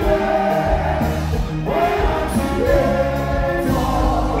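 Live Haitian kompa band music played loud through a PA, with sung vocals over a steady bass and beat.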